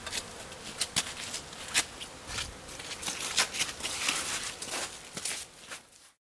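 Irregular crackling and rustling handling noise with many scattered sharp clicks, growing quieter near the end.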